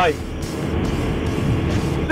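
Steady wind rush and road noise from a motorcycle cruising along a road, picked up by a camera mounted on the bike, with engine noise underneath.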